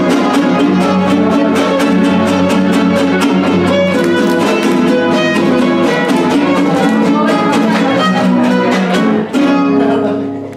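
Huasteco son (huapango) played on violin over fast, even strumming from guitar-type instruments: the fiddle carries the melody above the strummed rhythm, with a short break about nine seconds in.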